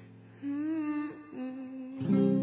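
A woman humming a short wordless phrase close to the microphone: a slightly rising note, a brief break, then a second held note, as an acoustic guitar chord dies away beneath it.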